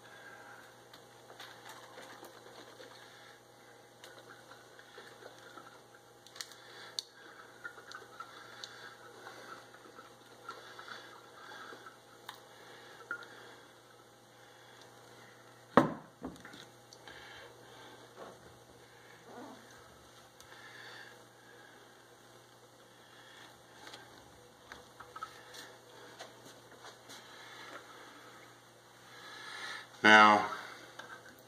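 A brown glass half-gallon jug being swirled and handled to dissolve honey in hot apple-juice wort: faint liquid sloshing with small clicks. A little before halfway, a single sharp knock as the glass jug is set down on the countertop.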